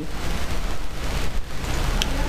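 Loud, steady hiss of recording noise with a low hum underneath, the same noise that runs under the narration.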